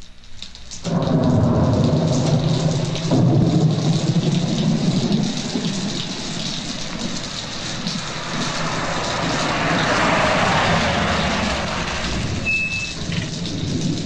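Thunderstorm: rain falling hard and steadily, with thunder rumbling in about a second in and swelling again around three seconds.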